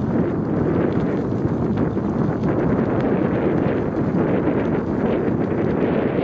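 Steady wind rumble on the microphone of a camera riding on a moving bicycle, mixed with the tyres rolling over a sandy path.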